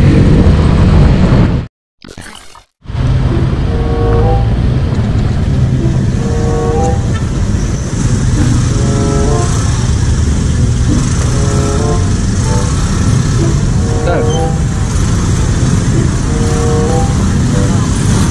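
Motorcycle engine and road noise heard from the rider's seat while riding slowly in traffic, broken by a brief drop to silence about two seconds in. Short tonal notes recur about once a second over the engine.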